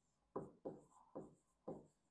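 Marker pen writing on a whiteboard: four short, faint strokes about half a second apart as letters are drawn.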